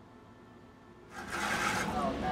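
Faint room tone, then about a second in, a metal whisk starts stirring liquid ceramic glaze in a plastic bucket, a much louder churning and clattering.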